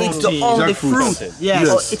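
Only speech: people talking in conversation.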